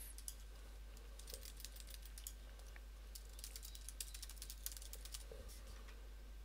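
Faint typing on a computer keyboard: quick runs of keystrokes with short pauses between them.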